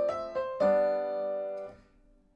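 Acoustic grand piano: two single melody notes, then a full chord held for about a second before it is damped. Together they sound out a one-to-four (C to F) move in the key of C.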